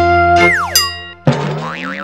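Short musical logo jingle with cartoon sound effects: held notes, then a steep falling glide about half a second in, and a sudden hit at about 1.3 seconds followed by a wavering, wobbling tone that fades out.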